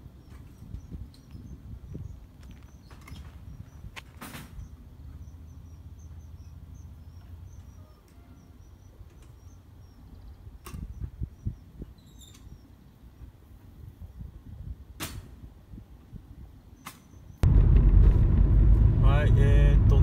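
Quiet outdoor ambience: a low rumble with faint high chirping and a few sharp clicks. About seventeen seconds in it cuts suddenly to loud, steady road and engine noise heard from inside a moving car.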